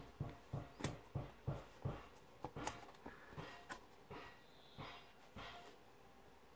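Fingers rubbing and picking at the edge of a cardboard board-book page that is slightly stuck to the next one, working it loose. The sound is a string of soft scuffs, about three a second at first, then a few sparser ones.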